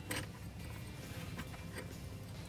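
Faint, sparse light ticks of thin jewelry wire being handled and passed through wire loops, over a low steady hum.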